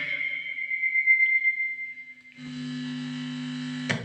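A spoken "hello" dies away in the echo of a homemade microphone played through a Bluetooth MP3 panel in echo mode, a class-D amplifier and loudspeakers, with a steady high ringing tone that fades out a little after two seconds in. A steady low hum then comes through the speakers for about a second and a half and stops with a sharp click just before the end.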